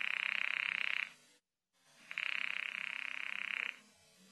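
Telephone ringing twice, each ring a rapid buzzing rattle lasting a second or two, with a second of silence between: the call being put through to the far end before it is answered.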